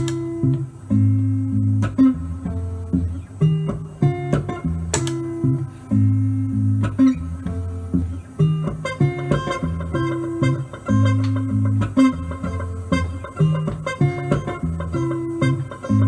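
Unaccompanied electric guitar playing a repeating low riff with sharp plucked note onsets. From about halfway, higher single notes are layered over it.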